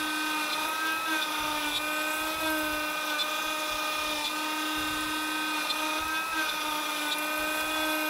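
Trim router on a desktop CNC running at high speed as its bit mills plywood: a steady, high-pitched motor whine with a light cutting noise.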